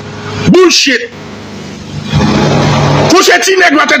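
A man's voice repeating a short phrase: a brief burst about half a second in, and more from about three seconds in. Between them is a quieter stretch of low steady hum and hiss.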